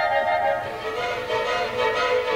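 Symphony orchestra playing slow classical music in sustained, held notes. The sound thins briefly just under a second in, then new notes come in.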